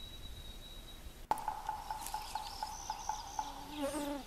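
Pileated woodpecker knocking into a rotting tree as it digs for insects: faint, regular knocks a few times a second. A steady buzzing hum runs under them.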